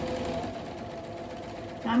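Electric domestic sewing machine running steadily, stitching a straight seam through fabric and foundation paper.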